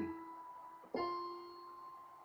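Piano keyboard notes played one at a time in a slow five-finger exercise. An earlier note fades, then a single new note is struck about a second in and left to ring and die away.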